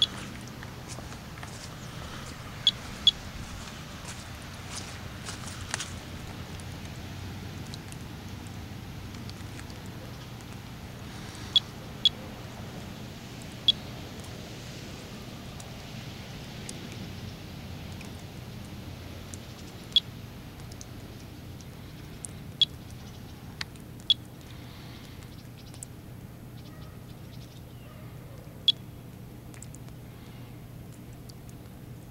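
Analog Geiger counter (Monitor 4) clicking at random intervals, about a dozen sharp single clicks over half a minute, some in close pairs and some several seconds apart. The rate, roughly 20 to 30 counts per minute, is a normal background radiation level. A steady low background noise runs underneath.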